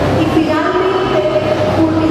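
A voice amplified through a public-address system with music underneath, over a steady low hum.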